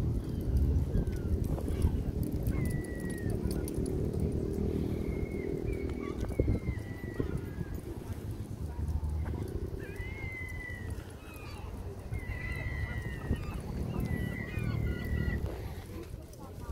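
Outdoor walking ambience: a steady low rumble of wind on the microphone with irregular footsteps on paving, and a scatter of short, high, slightly falling cries, mostly in the second half.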